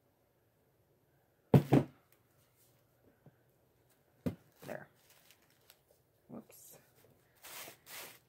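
Handling noises as a cut wooden dowel is worked down into a tissue-paper centerpiece: two sharp knocks about a second and a half in, a few softer taps later, and tissue paper crinkling near the end.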